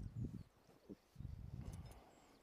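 Low, muffled rumbling and bumping of handling noise on a body-worn camera as a landing net is pulled free, in two short stretches about a second apart.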